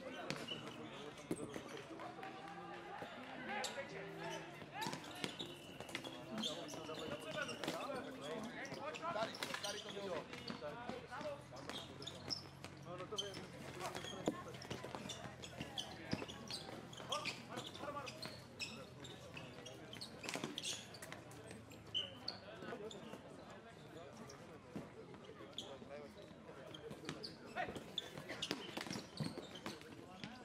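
Floorball play: sharp knocks and clacks of plastic sticks, ball and rink boards scattered throughout, over players' shouts and the voices of onlookers.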